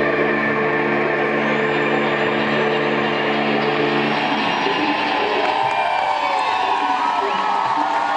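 A held electric guitar note rings steadily and cuts off about four seconds in, giving way to an audience cheering and whooping at the end of the song.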